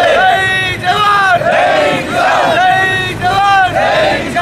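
A crowd of men chanting a protest slogan in unison, with loud, rhythmic, repeated shouts.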